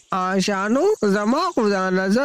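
A voice speaking with strongly rising and falling pitch. A faint, steady, high-pitched chirring sits behind it.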